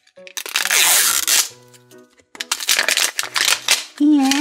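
Crinkly plastic wrap being peeled off an L.O.L. Surprise ball in two loud rustling spells, the second starting a little past the middle, over background music.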